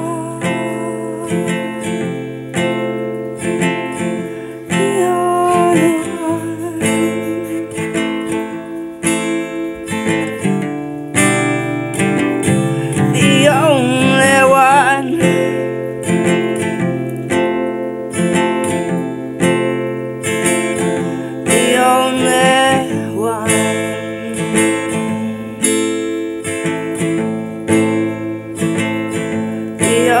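Steel-string acoustic guitar strummed steadily in chords, with a woman's voice singing over it in a few long, bending phrases, the strongest about halfway through.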